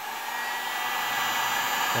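Electric hot air gun running just after being switched on: its fan and heater build up over the first half second to a steady rushing blow, with a faint high whine.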